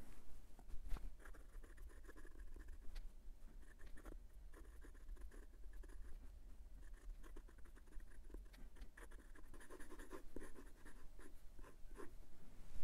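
MaJohn T5 fountain pen's #6 steel calligraphy nib writing on lined notebook paper: faint, uneven scratching of quick pen strokes, with short pauses between words.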